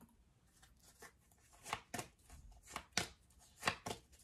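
Tarot cards being handled and set down on a tabletop: a series of light taps and snaps, coming in three quick pairs in the second half.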